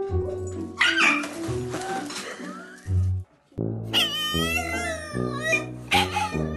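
Background music throughout. About a second in there is a short rush of noise, and over the second half a French bulldog howls in a long, wavering voice.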